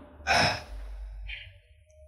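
A short breath close to a handheld microphone, a single breathy burst about a quarter of a second in, followed by faint low room sound.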